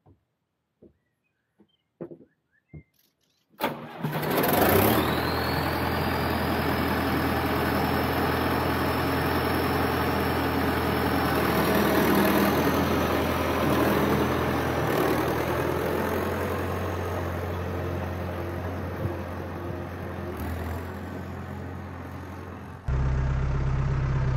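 John Deere tractor's diesel engine running steadily, with a thin whine that climbs slowly in pitch; it comes in suddenly about three and a half seconds in after near silence with a few faint clicks. Near the end it changes abruptly to a different, deeper engine hum.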